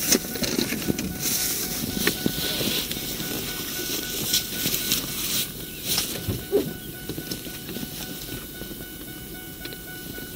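Rustling and handling noises with scattered small knocks as items are searched and moved about in a pickup truck bed, along with clothing brushing against a body-worn microphone.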